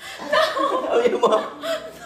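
A person laughing and vocalizing in short bursts, with no clear words.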